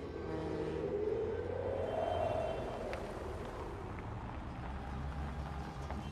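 A vehicle passing by over a steady low rumble. Its sound swells and rises in pitch to a peak about two seconds in, then fades.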